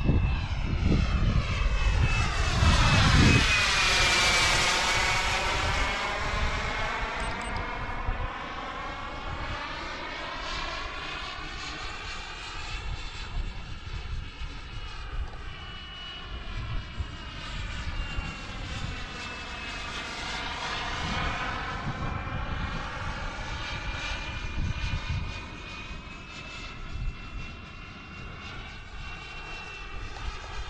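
Xicoy X-45 model gas turbine in a 3D-printed RC jet flying past: a steady high whine over a jet roar, with a sweeping, phasing sound. It is loudest in a close pass about four seconds in, then fades as the jet flies off, swelling a little again around twenty seconds in.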